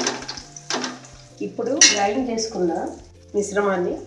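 A voice talking over a steel ladle stirring and clinking against an aluminium pot of frying onions.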